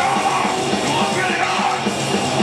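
Hardcore metal band playing live: distorted electric guitars, bass and drums, with a vocalist yelling over them.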